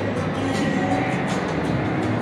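Casino floor ambience: a steady, loud din of background music and slot machine sounds.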